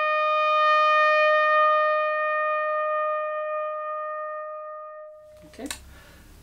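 Solo trumpet holding one long note, a step above the note before it, that slowly fades and stops about five seconds in.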